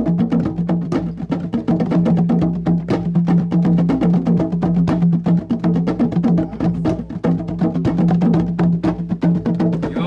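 Background music with fast, busy percussion over a steady low tone.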